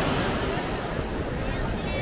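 Sea surf breaking and washing up the beach in a steady rush. Distant voices of people bathing sound under it, with a high shout near the end.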